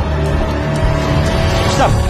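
Tense background music with a low, steady drone. A man's shout breaks in near the end.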